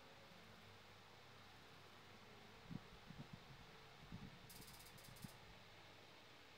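Near silence with faint snips and taps of fabric scissors cutting satin on a table, scattered through the second half.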